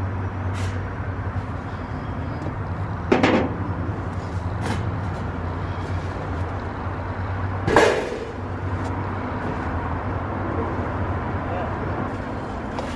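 A steady low mechanical hum, with two louder sharp knocks about three seconds and about eight seconds in, and a few small clicks.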